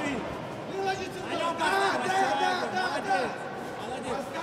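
Cageside voices: several men shouting and talking over one another in a large hall.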